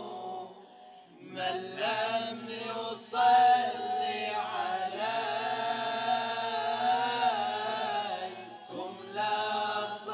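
A group of male voices singing a nasheed into microphones, unaccompanied. The singing drops away briefly about half a second in, then the voices come back in and carry on.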